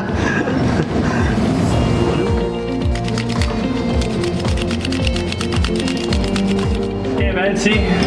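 Background music with a steady beat and held notes, with voices over it at the start and near the end.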